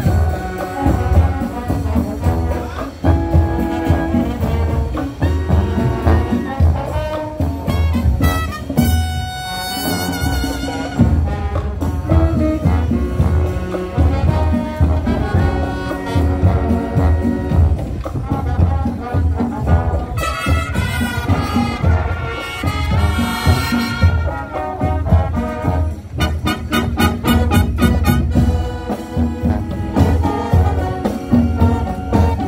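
Marching band playing live: a brass section of trumpets, trombones and sousaphone over a steady low beat.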